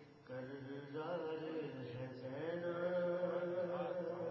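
A man's voice chanting a melodic devotional recitation, holding long notes. It starts just after a brief pause at the beginning.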